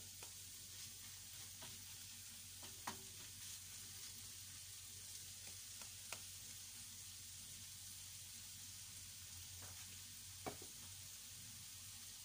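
Corned beef with garlic and onion frying in a frying pan: a faint, steady sizzle broken by a few sharp clicks, the loudest about three, six and ten and a half seconds in.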